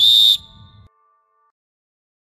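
A referee's whistle blown once in a short, sharp blast of about a third of a second.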